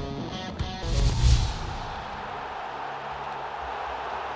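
Rock backing music with guitar, cut off about a second in by a heavy low impact hit with a whoosh, leaving a long, even noisy tail that slowly fades.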